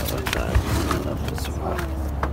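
A brief spoken 'yes? right', over a steady low rumble with scattered clicks and rustles.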